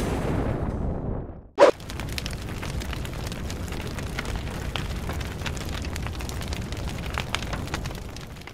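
Fire sound effect: a low boom dies away over the first second and a half. A short, loud burst follows, then a steady low rumble of burning with faint scattered crackles.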